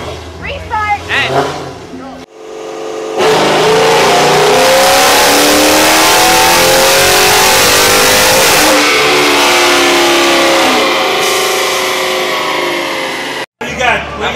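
Dodge Charger's V8 run at full throttle on a chassis dyno: a loud engine note climbing steadily in pitch for about six seconds, then dropping away as the pull ends. Voices talk briefly before the run starts.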